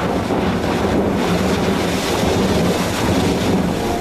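Icebreaker ship moving through pack ice: a steady rushing noise with a low hum underneath.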